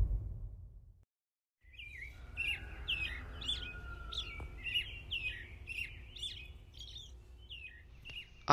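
Music fades out within the first second. After a brief silence, small birds chirp in a quick repeated series, about two short calls a second, over a faint low rumble.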